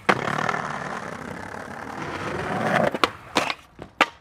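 Skateboard wheels rolling over concrete with a steady rumble that swells, then a couple of sharp clacks about three seconds in as the board hits the ground.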